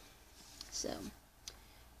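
A woman says "So" once, about a second in, with a few faint clicks around it against quiet room tone.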